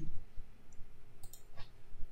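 A few quick computer mouse clicks, two close together about a second and a quarter in and a third just after, over faint background hiss.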